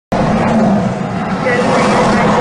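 Loud, steady vehicle and traffic noise, with a voice beginning near the end.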